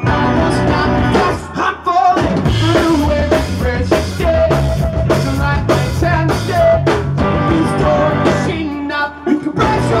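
A live band playing loud through the house sound system: a man singing over electric guitars, keyboards and a drum kit, with the drums thinning out briefly near the end.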